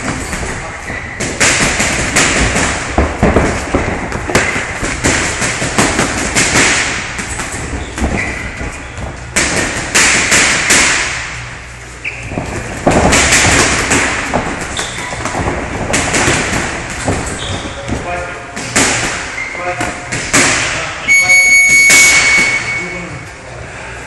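Boxing gloves landing on gloves and headguards, with thuds of footwork on the ring canvas, over loud gym noise with voices. Near the end a steady, high electronic tone sounds for about a second, like a gym's round timer.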